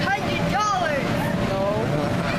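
Children's high voices calling out over the steady noise of the electric air blower that keeps an inflatable bounce house inflated, with a constant hum running under it.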